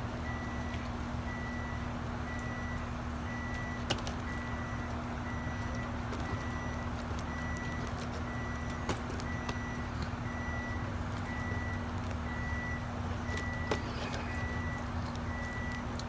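A vehicle's reversing alarm beeping steadily, about once a second, over a low engine rumble and a steady hum.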